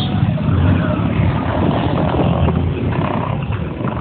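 Motorcycle engines and road traffic running steadily, heard from within the moving traffic on a highway, with a dense low rumble.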